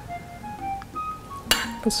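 A metal serving spoon clinks sharply once against a ceramic plate about one and a half seconds in as a portion of casserole is set down, over faint background music.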